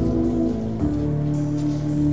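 Ambient electronic music: held synth chords that shift to new notes about a second in and again near the end, over a hissing, rain-like noise layer.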